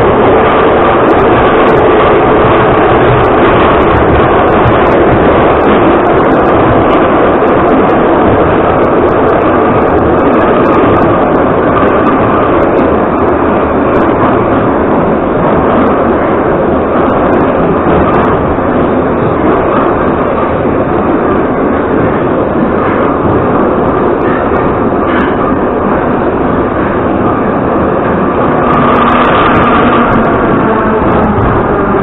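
Inside a Soviet Ezh3 metro car running through a tunnel: the loud, steady rumble and rattle of the car under way. It eases a little in the middle and grows louder again near the end.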